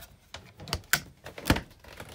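A few sharp clicks and knocks, then a louder thump about one and a half seconds in.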